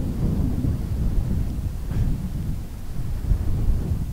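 Strong wind buffeting the microphone in an unsteady low rumble, with rough surf breaking on a shingle beach.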